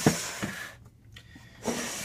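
Plastic rack tub being slid along the rack: a sharp knock as it starts, then a scraping rub of plastic on the rack that dies away under a second in, with a shorter scrape a little later.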